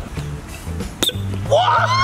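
Background music with a steady bass line. A single sharp click about halfway through, and excited voices shouting near the end.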